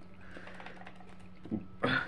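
Faint light clicks and scrapes of a table knife cutting a cookie on a plate, over a steady low electrical hum. A voice starts just before the end.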